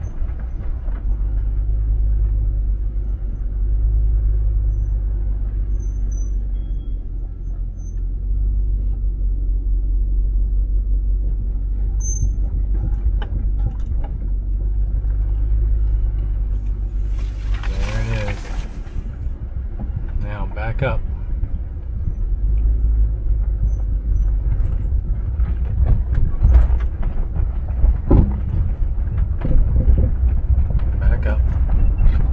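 2004 Range Rover HSE's 4.4-litre V8 and tyres making a steady low rumble as it creeps along a rough dirt trail, heard from inside the cabin. A few knocks from the ruts come near the end.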